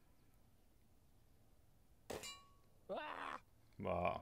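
Diana 54 Airking Pro spring-piston air rifle firing once about two seconds in: a sharp crack followed by a brief metallic ring.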